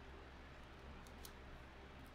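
Near silence: the faint steady hum of an electric desk fan, with a few faint clicks.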